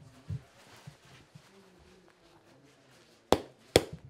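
Two sharp smacks of a leather boxing glove being struck, about half a second apart near the end, as a fighter tests the fit of a new glove; before them, soft rustling and a light thump from handling the glove.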